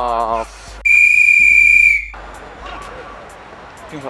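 A referee's whistle blown once in one long steady blast lasting a little over a second, just after a man's shout trails off.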